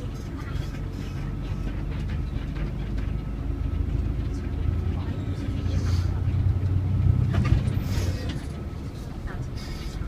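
City bus engine and road noise heard inside the cabin while driving. The low engine hum builds from about four seconds in, is loudest around seven to eight seconds, then eases.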